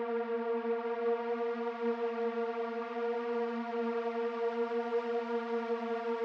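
Background synthwave music: a steady, held synthesizer tone with no beat.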